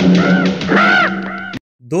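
A man's voice from the film soundtrack letting out a series of harsh, rising-and-falling calls, most likely a villain's mocking laugh, over a low steady music note. It cuts off suddenly near the end.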